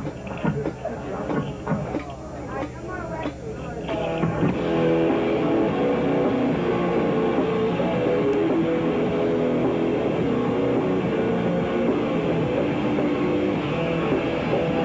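Live noise-rock band with electric guitar, bass and drums kicking into a loud song about four and a half seconds in, after a few seconds of voices and stray instrument noise.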